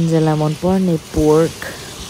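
Speech: a person's voice in three drawn-out bursts over a faint steady background noise.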